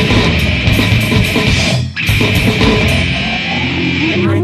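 Heavy, distorted metal music: guitar and drums playing at full level, with a momentary drop-out just before two seconds in before the music carries on.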